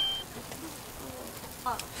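Meat sizzling on a barbecue grill: a steady, even hiss.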